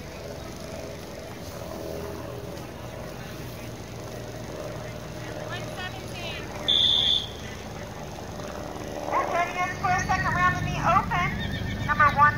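A horse whinnying in wavering calls over the last few seconds, with a low rumble underneath. About seven seconds in there is a short, loud, high-pitched beep.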